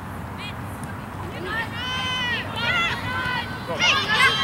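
High-pitched, wordless shouts from female soccer players calling out during play: several short yells in quick succession from about halfway in, growing louder near the end, over a steady open-air noise.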